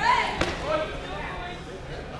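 Raised voices calling out, with a single sharp knock about half a second in.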